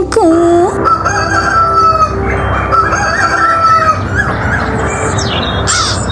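A rooster crowing: one long cock-a-doodle-doo lasting about three seconds, starting just after a sung line ends.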